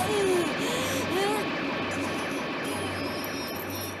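An old woman crying out in pain, two wavering cries in the first second and a half, over a steady background din.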